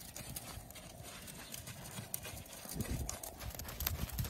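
Hoofbeats of a miniature pony walking on sand: a run of irregular soft footfalls that grows a little louder near the end.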